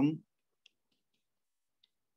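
A spoken word ends just after the start, then a few faint, irregular ticks of a stylus tip tapping on a tablet's glass screen during handwriting.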